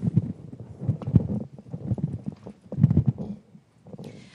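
Handling noise on a handheld audience microphone: a run of irregular low thumps and knocks as the mic is picked up and moved, stopping about three and a half seconds in.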